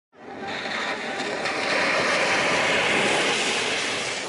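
A 2013 Range Rover driving through a shallow ford towards and past the camera, with the rush of water spray from its tyres. The sound builds over the first second or two and eases a little near the end.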